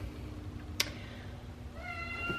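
A cat meowing faintly near the end, after a single sharp click about a second in.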